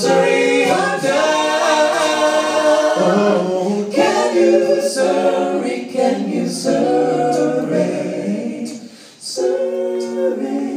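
Five-voice mixed a cappella group singing close-harmony chords live, three men and two women on microphones, with no instruments. The voices drop out briefly about nine seconds in and then re-enter together.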